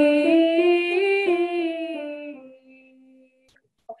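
A woman singing the syllable "zee" as a vocal warm-up, starting on a buzzing z and stepping up a scale and back down. The last low note is held and fades out about three seconds in.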